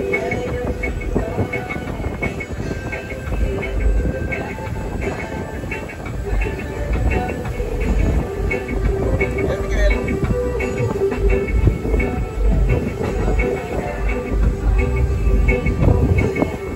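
Steady, uneven rumble of a speedboat under way, engine and wind buffeting the microphone, with background music playing over it.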